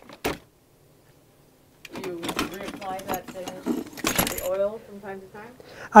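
Rummaging in a plastic storage bin of tools and materials: irregular light clattering and rattling of objects knocking together, loudest about four seconds in, with quiet talk underneath. It starts after a second and a half of silence.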